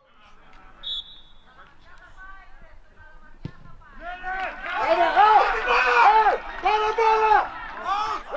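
Men's voices shouting and calling across an amateur football pitch, growing loud from about four seconds in. A short high whistle blast sounds about a second in, and a single thud comes around three and a half seconds.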